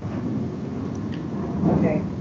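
A steady low rumbling noise, with faint, indistinct voices near the end.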